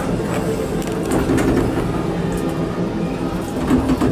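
Monorail car running along its elevated track, heard from inside the car: a steady rumble and hum with a few light knocks.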